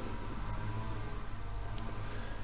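Grass-cutting mower running, heard as a faint, steady low drone, with one small tick near the end.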